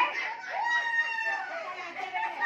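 A woman's long, high-pitched call, rising and then held steady for about a second, over the group's laughter and chatter.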